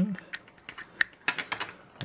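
Several light, sharp clicks and rattles of a plastic USB plug being pushed into a Raspberry Pi's USB port and the cables being handled, the sharpest click about halfway through.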